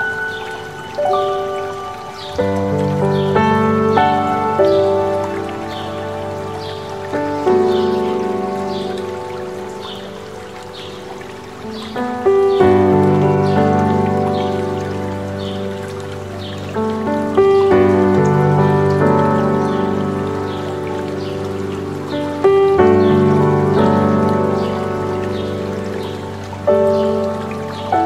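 Slow, soft piano music, with a fresh chord struck every five seconds or so and single notes in between, over the steady rush of a stream. A bird chirps over and over high above the piano, about once or twice a second.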